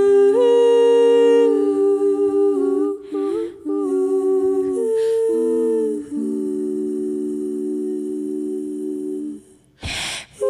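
Three women's voices in close harmony singing wordless, held chords. The chord shifts around three seconds in and again around six seconds in, and the last long chord stops just before the end.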